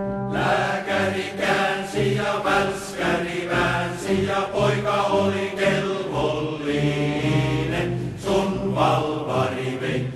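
A choir singing a Finnish soldiers' marching song, the sung notes moving in short phrases over low sustained notes.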